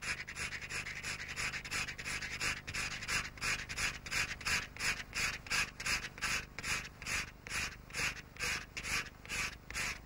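Craft knife blade scraping black wax crayon off card, in quick even strokes, about three a second.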